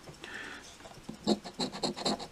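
A coin scratching the latex coating off a scratch-off lottery ticket, in quick repeated strokes that start a little over a second in.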